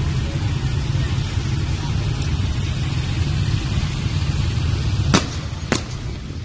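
Many small motorcycle engines running together as a large procession of motorbikes rides along, a steady low drone, with two sharp clicks a little over half a second apart near the end.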